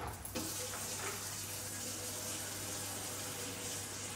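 Water running steadily from a kitchen tap into the sink and down the drain, a continuous hiss that starts just after the beginning.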